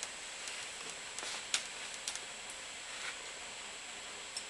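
Faint rustling and a few light ticks of fingers working a rubber waterproof seal along a crimped wire, over a steady hiss.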